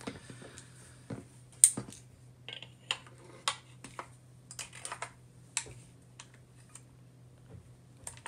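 Irregular small clicks and knocks of SIG SG 553 rifle parts as the lower receiver is fitted onto the upper, a tight fit; the loudest knock comes about one and a half seconds in.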